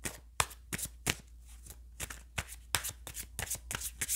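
A tarot deck being shuffled in the hands: a quick, irregular run of card flicks and slaps, several a second.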